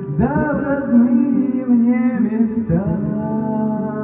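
A man singing through a karaoke microphone over a karaoke backing track, holding long notes.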